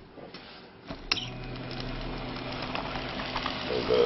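A switch clicks about a second in, and a small DC electric motor fed through a pulse width modulator starts up and runs with a steady hum, turning a belt-driven wheel that carries magnets past coils.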